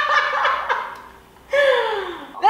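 A woman laughing with delight in a high voice: a fluttering laugh in the first second, then a longer call near the end that falls in pitch.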